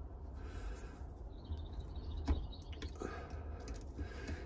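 A few light metallic clicks and handling noise as the valve keepers are seated with a Briggs & Stratton valve spring compressor on a small engine's intake valve, over a steady low rumble.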